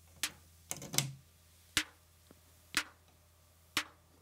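Faint, sharp electronic snare hits from a Nord Drum, sounding about once a second in a steady pulse. Near the start two hits fall close together: the drum is double-triggering from its trigger input.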